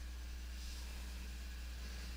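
Quiet, steady background: a low electrical hum with a faint even hiss, and no distinct event.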